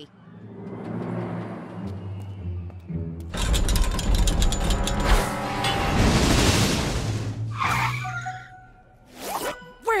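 Cartoon background music with a roller coaster train rattling along its track, the rattling rush loud from about three seconds in until about eight seconds.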